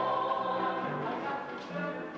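Chorus of stage singers singing together with musical accompaniment.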